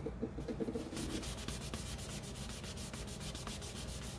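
A cloth wad rubbed back and forth in quick repeated strokes over a paper-collaged cardboard journal cover, working freshly sprayed coral ink stain into the paper.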